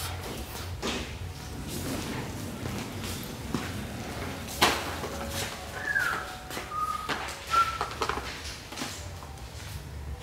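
Wire shopping cart rolling on a concrete floor with a low rumble, and the cardboard boxes of firework cakes in it knocking and being handled, with one sharp knock about halfway. A few short high squeaky tones come in the second half.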